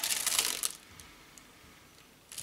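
Brief rustling and clicking of a wax melt and its packaging being handled, dying away after under a second into quiet room tone.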